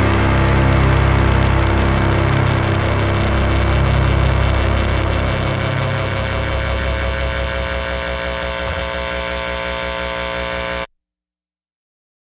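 The final held chord of an indie rock song, ringing out with many steady tones and slowly fading. The low end pulses, and the sound cuts off abruptly about eleven seconds in.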